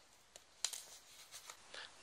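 A few faint, short clicks, one sharper than the rest about two-thirds of a second in, with softer ticks after it.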